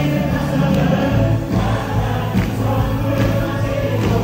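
Amplified contemporary worship music: a praise team singing into microphones with the congregation singing along as a choir of many voices over a steady instrumental accompaniment.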